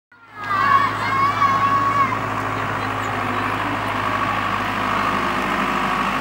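Children's voices calling out, with one high voice held for about a second and a half near the start, over a steady low hum.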